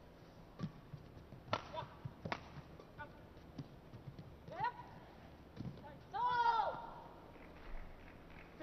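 A fast badminton doubles rally: a quick run of sharp shuttlecock strikes off the rackets. About six seconds in comes a loud, drawn-out shout from a player as the rally ends.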